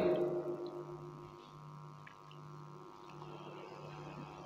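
The last spoken words echo from loudspeakers and die away within the first second. After that a public-address system gives only a faint, steady hum.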